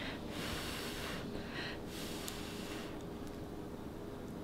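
Two breathy puffs of air from a person, about a second apart in the first half, over a faint steady hum.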